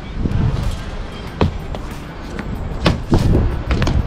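Wind rumbling on the camera microphone, with a few sharp knocks of feet and hands striking concrete as a traceur jumps and lands crouched on a balustrade rail. The knocks come about a second and a half in, about three seconds in, and near the end.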